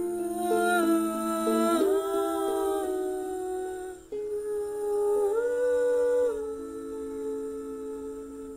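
Wordless humming in layered vocal harmony, two or three voices holding long notes that slide smoothly from one pitch to the next, with a short break about four seconds in.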